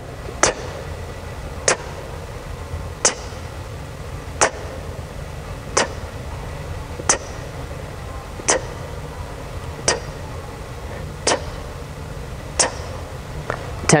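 Sharp, clock-like ticks at even spacing, about one every second and a half, over a steady low hum.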